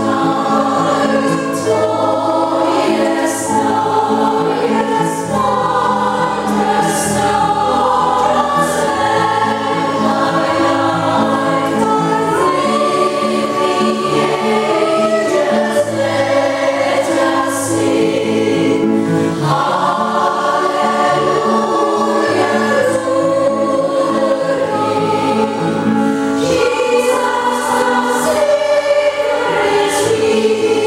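Women's choir singing in parts, with piano accompaniment.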